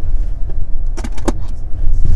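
Low, steady rumble of a car heard from inside its cabin, with a few sharp clicks about a second in.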